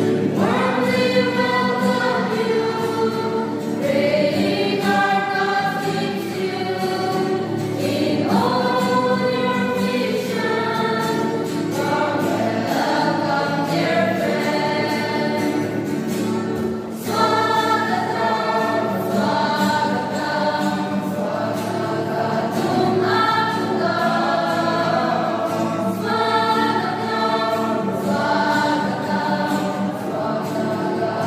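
Mixed choir of young men and women singing a hymn, accompanied by an acoustic guitar, with a short break between phrases about halfway through.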